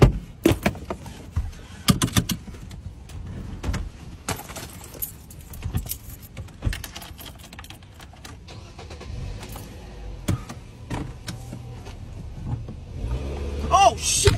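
Car keys jangling with a string of sharp clicks and knocks from things being handled in a car's driver seat, busiest in the first couple of seconds. A low steady hum comes in about nine seconds in.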